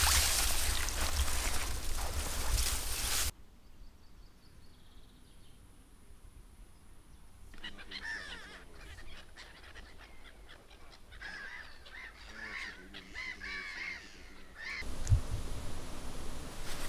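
A flock of gulls calling repeatedly over a river, short rising and falling cries from about seven seconds in until near the end. Before that, a loud rushing noise fills the first three seconds and stops abruptly.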